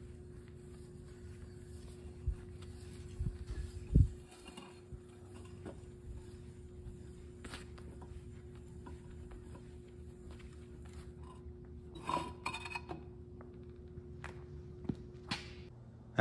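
Faint workshop sounds around an engine block: a steady hum with a few scattered knocks and clicks, the loudest a thump about four seconds in.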